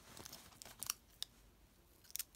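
Faint handling noise of small items: light crinkling of a plastic-wrapped sweet roll, strongest just under a second in, followed by a sharp click.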